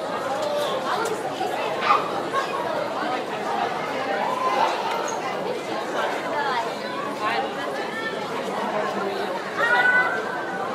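Classroom ambience: many overlapping voices chattering at once, with no single conversation standing out. There is a sharp knock about two seconds in, and one voice rises louder near the end.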